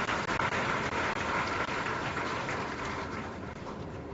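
A large audience applauding, many hands clapping at once, dying down near the end.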